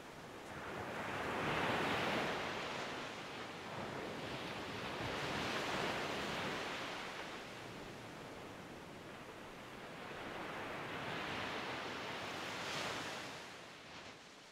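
Ocean waves: a steady rushing noise with no music, swelling and falling back about three times.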